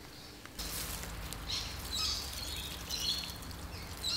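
Water running in a steady low rush that starts suddenly about half a second in, from a garden tap or a watering can pouring onto plants. Birds chirp over it.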